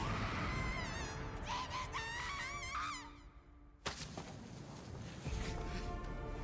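Anime episode soundtrack: a shrill, wavering cry for about three seconds, a brief hush, then a single sudden loud hit about four seconds in, with music coming back in near the end.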